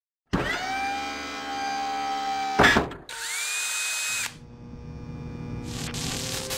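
A power-tool motor whirs up to speed and runs steadily, stops with a loud short burst, then whines up again and runs about another second. Softer steady tones follow, and near the end there is a hissing swish with a few light clicks.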